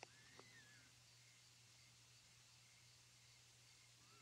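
Near silence: faint room tone with a steady low hum, and one faint high sound that rises then falls within the first second.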